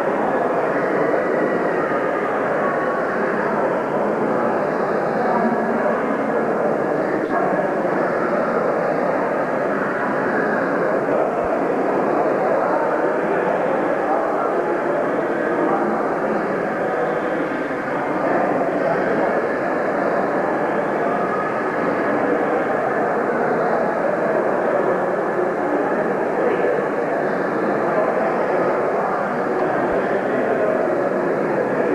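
Steady babble of many people talking at once in a large hall, with no single voice standing out.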